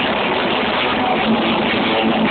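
Live rock band playing loudly, with electric guitars and drums, picked up by a low-quality camera microphone so that it comes through as a dense, muddy wash.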